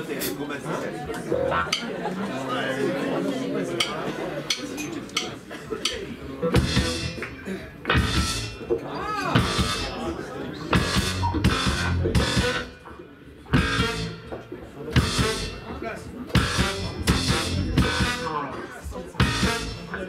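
Voices and chatter, then about six seconds in a live band comes in: drum kit, electric guitar, keyboard and a horn section with saxophone playing loud, punchy ensemble hits with cymbal crashes. The band breaks off for about a second a little past the middle, then the hits resume.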